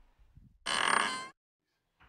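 A short ringing tone lasting about half a second, which cuts off abruptly into silence.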